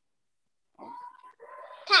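A faint, drawn-out voice imitating a cat's meow, heard through a video call, in answer to the question of what sound a cat makes. A louder spoken word follows near the end.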